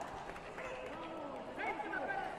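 Indistinct voices calling out and talking across a large sports hall, with a few faint knocks near the start.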